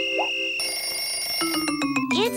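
Children's TV bumper jingle: held electronic tones with a short pitch swoop at the start, changing to new notes about one and a half seconds in, with a few quick clicks near the end.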